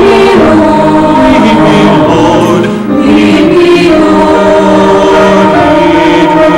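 Mixed church choir of men's and women's voices singing a sacred piece, holding long notes, with a short dip about three seconds in between phrases.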